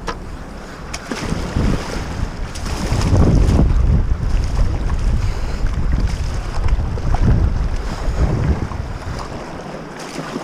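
Rushing, churning whitewater of a river rapid in high flood, heard close up from the deck of a kayak, with wind buffeting the microphone. It swells loudest about three seconds in.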